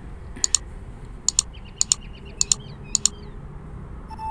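Sharp clicks in quick pairs, about five pairs in four seconds: a computer mouse button pressed and released while windows on screen are dragged and arranged.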